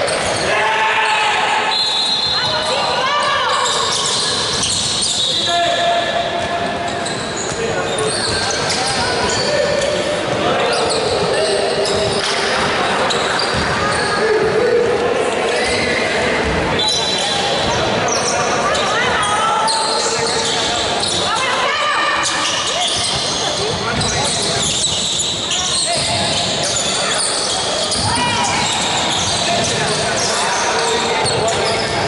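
Basketball being dribbled and bouncing on a wooden gym floor during a game, with voices of players and onlookers calling out throughout, echoing in a large hall.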